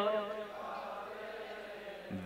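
A man's sung line of a chanted Gurbani refrain fades out just after the start, followed by a quiet pause with only faint room sound before the next line.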